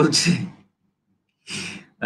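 A man's voice finishes a phrase on a breathy trailing exhale, then there is a moment of complete silence, followed by a short audible intake of breath about one and a half seconds in, just before he speaks again.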